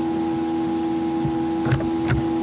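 A steady hum made of several fixed pitches over a faint hiss, with two faint taps near the end.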